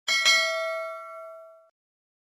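Notification-bell sound effect from a subscribe animation: a bright bell ding with several ringing tones, struck twice in quick succession. It rings and fades, then cuts off after about a second and a half.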